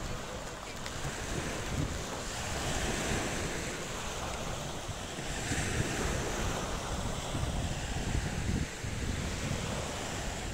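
Small waves breaking and washing up a pebble beach, the surf swelling and easing every few seconds. Wind buffets the microphone throughout.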